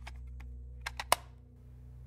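Computer keyboard keystrokes, a few sharp clicks with three in quick succession about a second in, over a low steady hum.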